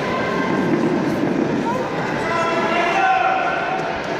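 Indistinct crowd voices and shouts in a large reverberant sports hall, with a few raised voices standing out in the second half.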